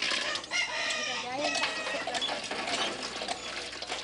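A rooster crowing about half a second in, with chickens clucking.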